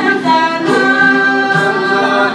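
A family group of male and female voices singing a hymn together, holding long notes.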